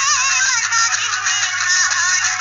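Instrumental interlude of a Hindi film song: a wavering melody line with vibrato over steady musical accompaniment.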